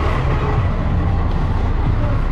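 Diesel engine of a chicken bus, a converted school bus, idling while passengers board: a steady low rumble.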